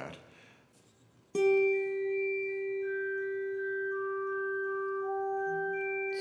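An acoustic guitar string is plucked about a second in, and the Vo-96 acoustic synthesizer holds its note at a steady sustain. Above the note, single overtones come in and drop out one after another: an arpeggio of harmonics, a little melody played by the synthesizer's modulator.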